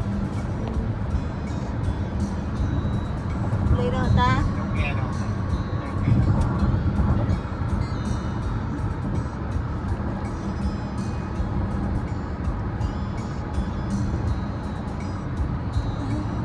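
Steady low rumble of a car's cabin, the engine and road noise heard from inside the vehicle.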